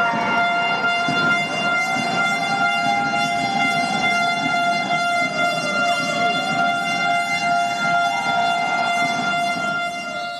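One long, loud horn tone held steady without a break, over a background of noise from the gym.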